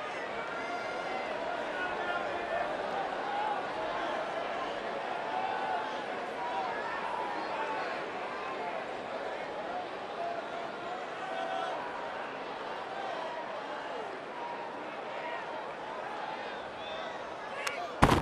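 Ballpark crowd murmur: many voices chattering in the stands at a steady level. Near the end, one sharp crack of bat on ball as the batter fouls off a fastball.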